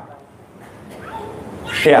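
A short pause in a man's microphone-amplified lecture, filled with faint, indistinct voices. His speech returns near the end.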